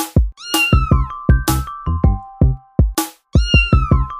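A kitten meowing twice, each a high cry falling in pitch, about three seconds apart, over electronic music with a steady drum-machine beat.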